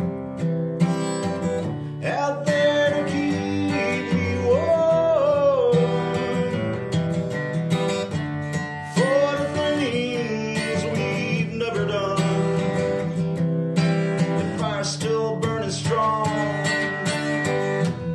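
Steel-string acoustic guitar strummed in a steady rhythm, with a man singing long held notes over it: a solo acoustic country/Americana song.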